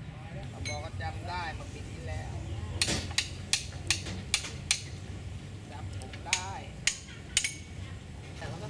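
Metal hand tool striking a fitting on a steam locomotive: a quick run of six sharp metallic clinks, then three more near the end.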